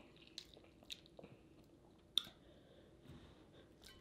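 Faint eating sounds: a person chewing, with a few small wet clicks and one sharper click about two seconds in.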